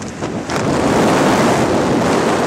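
Air rushing hard over the camera microphone during a tandem skydive, a loud steady roar of wind that grows louder about half a second in.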